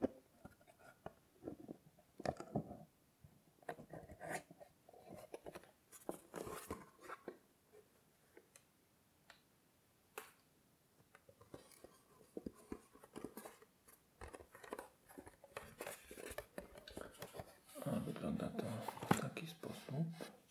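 Wooden chess box handled close to the microphone: small clicks as its metal clasps are undone, then taps and scrapes of the wooden case. A denser run of knocking and rustling comes near the end as the lid is opened.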